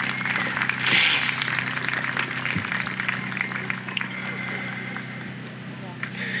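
Crowd applauding, strongest about a second in and then tapering off, over a steady low hum.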